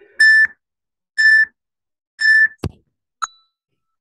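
Workout interval timer beeping a countdown to the end of a rest period: three identical high beeps about a second apart, each about a third of a second long. A sharp thump and a short high blip follow near the end.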